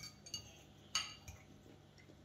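Metal forks clinking against ceramic plates: a few light clinks, each with a short high ring, the sharpest about a second in.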